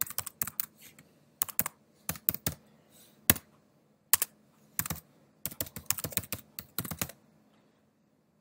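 Typing on a computer keyboard: irregular bursts of keystrokes with short pauses between them, stopping about a second before the end.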